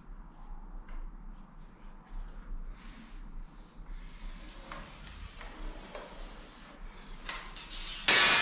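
Light scratching and rubbing as a pen marks a cut line on porcelain floor tiles along a long metal straightedge. Partway through comes a longer sliding rub, and near the end a few light clicks as the straightedge is handled.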